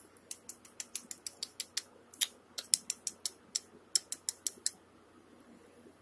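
A quick, slightly uneven series of sharp little clicks, about five or six a second, stopping a little over a second before the end.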